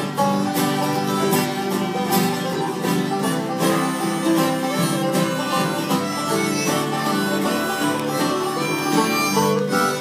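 Several acoustic guitars strumming and picking together in a country/bluegrass jam, playing steadily.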